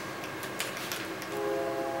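A 12-volt, 1200-watt modified sine wave power inverter running with its cooling fans on, a steady multi-tone hum that sets in about a second and a half in, with a few light handling clicks before it.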